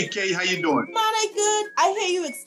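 A high-pitched voice singing short phrases of an advertising jingle, with a couple of held notes partway through and little or no instrumental backing.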